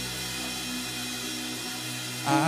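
Worship band music: steady, sustained keyboard chords held between sung lines, with no drums playing.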